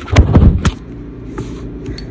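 Handling noise on a phone's microphone: a loud rumbling rub with a few knocks for about half a second as the phone is gripped and its lens covered. A faint steady hum follows.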